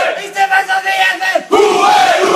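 A group of footballers chanting and shouting together in a victory celebration. The chant dips briefly and surges back loud about one and a half seconds in.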